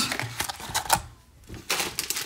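Plastic food tubs clicking and knocking together as they are handled and set down, a run of sharp clacks, a short lull, then a few more clacks near the end.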